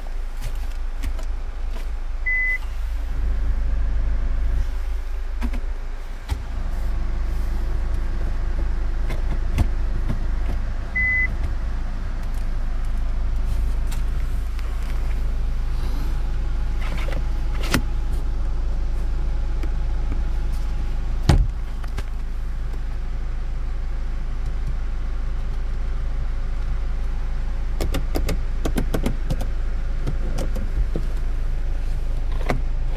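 Hyundai Tucson heard from inside the cabin: a steady low engine rumble throughout. Two short high beeps come about 2 and 11 seconds in, with scattered clicks and a sharp knock about 21 seconds in.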